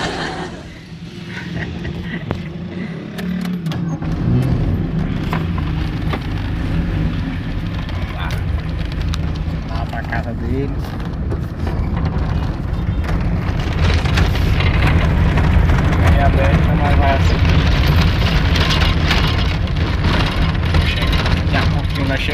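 Car engine and road rumble heard from inside the cabin as the car pulls away and drives. The engine pitch briefly rises about four seconds in, and the rumble grows louder in the second half.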